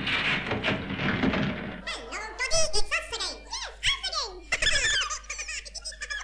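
A studio audience laughing for about the first two seconds, then squeaky, very high-pitched comic character voices chattering in quick gliding bursts.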